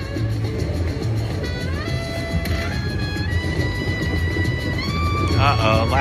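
Slot machine's hold-and-spin bonus music during a free spin: sustained electronic tones that step upward in pitch about two seconds in and again near the end, over a low steady casino hum.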